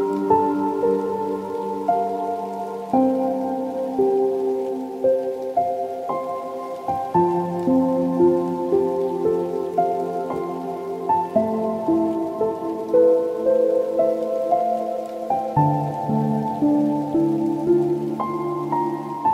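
Soft, slow solo piano music: gentle melody notes changing about once a second over low chords held for several seconds.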